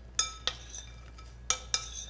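Glass mixing bowl clinking as crisp bread croutons are tossed in it by hand: two pairs of sharp clinks, each with a short glassy ring, about a second apart.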